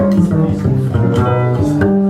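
Jazz duo of acoustic piano and upright double bass playing.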